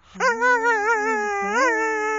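Whippet howling: one long, wavering howl that starts a moment in, briefly breaks and swoops up in pitch about one and a half seconds in, then carries on.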